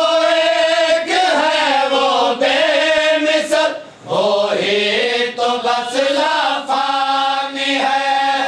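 Group of men chanting a noha lament together, unaccompanied, in long drawn-out held notes, with a short break for breath about four seconds in.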